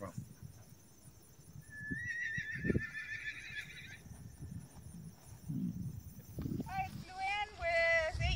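A horse whinnies once: a quavering call of about two seconds that starts about two seconds in. A few soft low thumps come around it.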